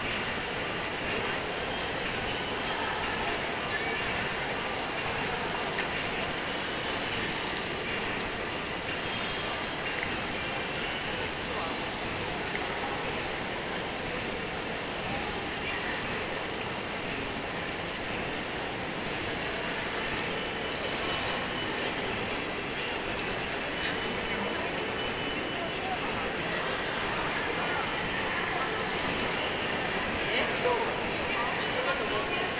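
A steady, even background rush with indistinct murmuring voices, no single sound standing out.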